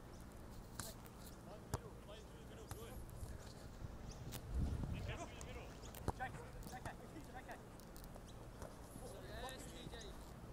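A football being kicked during play: a few sharp, separate thuds, with faint shouts from players across the pitch in between.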